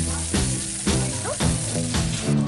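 Chicken pieces and burger patties sizzling on a gas barbecue hotplate. Music with a steady beat plays over it.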